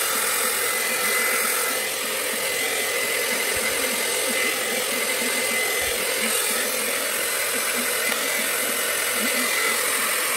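Handheld hair dryer running steadily: a loud, even rush of air with a constant high-pitched motor whine.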